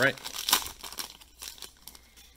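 The foil wrapper of a Donruss Optic basketball card pack crinkles as it is torn open by hand: a sharp rip about half a second in, then softer crinkles that die away.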